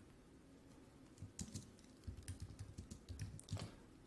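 Faint computer keyboard keystrokes, a scattering of light taps starting about a second in.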